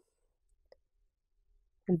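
Near silence, broken by one faint tap of a stylus on a writing tablet about three-quarters of a second in; a voice starts speaking near the end.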